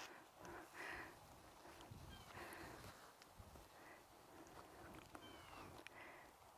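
Near silence: faint outdoor ambience, with a few faint short high calls from an animal.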